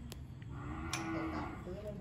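A single drawn-out, low-pitched call lasting about a second, beginning about half a second in, with a couple of sharp clicks around it.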